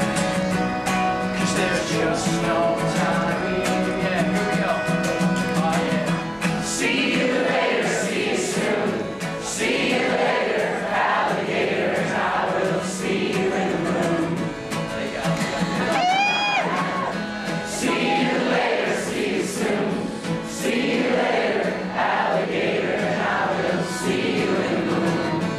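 Live acoustic guitar and accordion playing while many voices in the audience sing along together. About two-thirds of the way through, a brief rising whoop cuts through the singing.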